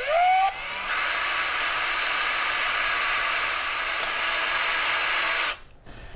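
Ryobi cordless drill spinning a rubber decal-eraser wheel up to speed with a rising whine. The wheel then runs steadily against wheel-weight adhesive foam on a car wheel's rim, rubbing it off, and stops near the end.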